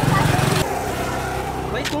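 A loud low rumble drops off suddenly about half a second in, leaving quieter steady road traffic noise. A man's voice comes in near the end.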